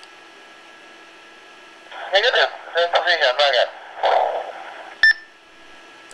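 Icom IC-82 handheld transceiver's speaker: a faint steady hiss, then a voice coming over the radio for about two seconds, and a short click and beep just after five seconds.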